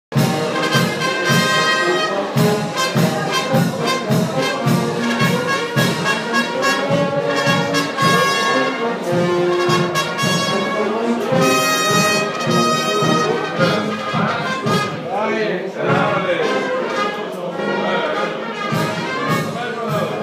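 Brass band playing a march, with brass carrying the tune and drums keeping a steady beat.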